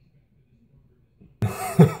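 Quiet for over a second, then a sudden cough close to the microphone about a second and a half in, running straight into the start of speech.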